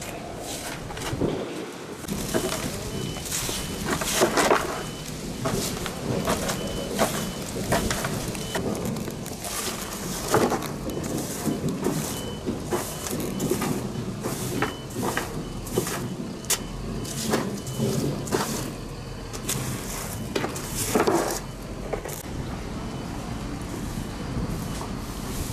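A stiff-bristled broom sweeping dry leaves and grit across concrete into a dustpan, in repeated irregular scraping strokes.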